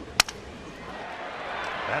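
Crack of a wooden baseball bat hitting a pitched ball, a single sharp crack, followed by stadium crowd noise rising.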